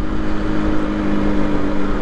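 Aprilia RS 125's single-cylinder four-stroke engine running at a steady cruise, one even tone that holds level, under a constant hiss of wind and road noise.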